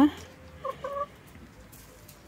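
Domestic hen giving two short clucks in quick succession, about half a second in.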